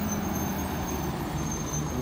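A city bus's diesel engine running as the bus drives past and away, a steady low drone over the hum of other road traffic, with a thin high tone above it.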